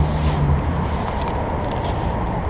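Steady low rumble of street traffic, with a faint engine hum that fades out about half a second in.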